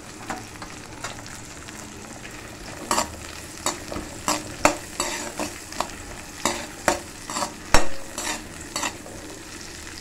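Shallots, garlic and chillies sizzling in hot oil in a black wok, stirred with a perforated steel skimmer ladle. The sizzle runs steadily; from about three seconds in, the ladle scrapes and clicks against the pan again and again, the sharpest knock near the end.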